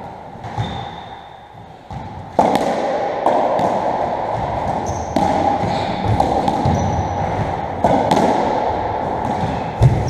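A racketball (squash57) rally in a squash court: the hollow rubber ball struck by racket and hitting the walls about six times, roughly every one to two seconds from about two seconds in, each hit echoing around the court. Short squeaks of shoes on the wooden floor come between the hits.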